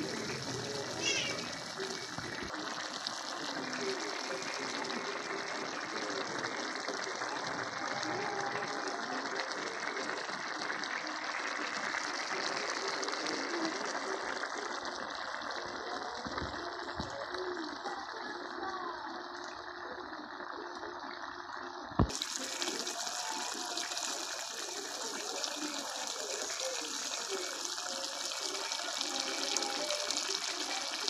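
Chicken and tomato stew simmering in a pan: a steady bubbling boil, with one sharp click about two-thirds of the way through.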